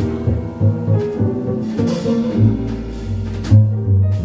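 Live small-group jazz: upright double bass, piano and drum kit playing together, with the bass's low notes the loudest part and occasional sharp drum or cymbal strokes.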